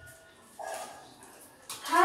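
Wooden door creaking on its hinges as it is swung open: a few faint, drawn-out squeaks. A short click near the end, then a child's voice starts.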